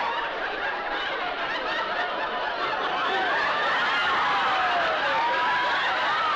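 Studio audience laughing continuously, many voices at once, swelling slightly in the second half.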